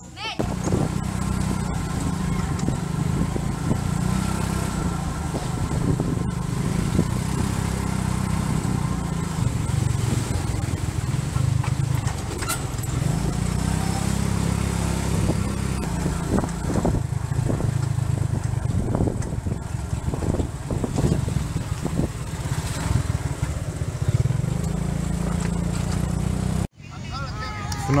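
Motorcycle engine of a tuk-tuk running during a ride, rising and falling in pitch several times as it speeds up and slows down. The sound cuts off abruptly near the end.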